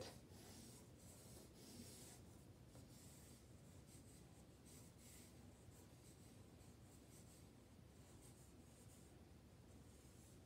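Faint scratching of a hard 2H graphite pencil on drawing paper as lines are sketched, in short irregular strokes.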